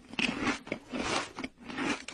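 Crunchy chewing: a mouth biting and chewing on something crisp, about four crunches in the two seconds.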